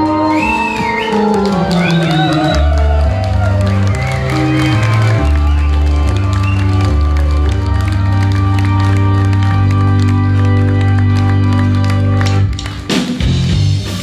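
Nord C2 combo organ playing loud held chords over a deep bass line that steps from note to note, as the end of a long organ intro to a rock song. Audience shouts and whistles come through in the first few seconds, and the held chords break off about a second before the end.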